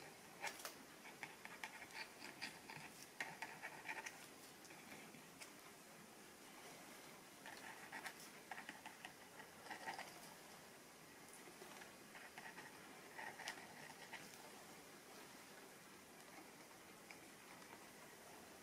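Faint, intermittent scratching and tapping of a plastic credit card's cut edge dabbing and scraping thick acrylic paint on paper, in short clusters of small marks.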